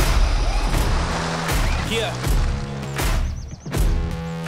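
Music with a heavy, steady bass line and sharp percussive hits about once a second.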